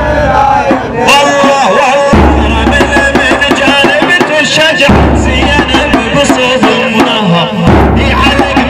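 A male reciter chanting a Shia mourning lament (latmiyya), with a large bass drum beaten in a steady rhythm under the voice.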